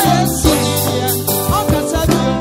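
Live gospel band music: drum strokes over held chords and a bass line, with a voice gliding briefly over it.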